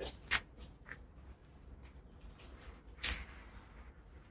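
A few short clicks and knocks of tools and wire being handled during bonsai wiring, the loudest a sharp click about three seconds in.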